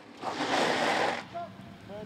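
Tyres of a Suzuki Swift hatchback hissing over wet tarmac for about a second, with no engine note standing out.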